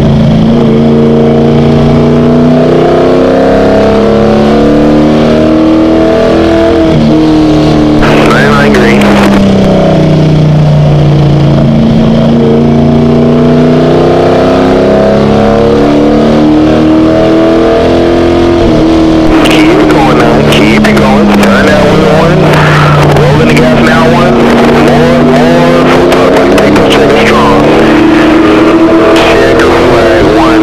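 Race car engine heard from inside the cockpit while lapping an oval. Its pitch falls and climbs again several times as the driver lifts for the turns and gets back on the throttle down the straights.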